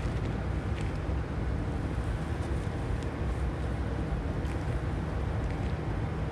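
Steady blower and airflow noise of a biological safety cabinet, with a low hum under it and a few faint clicks from syringe and vial handling.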